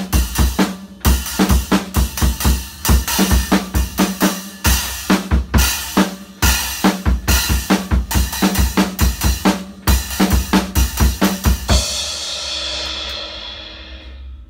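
Drum kit played in a short groove, with a Saluda Earthworks heavy crunch cymbal stack struck among the drum hits. The playing stops about twelve seconds in and the cymbals ring out, fading away.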